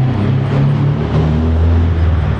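A motor vehicle engine running close by, a loud low hum that shifts up and down in pitch a few times.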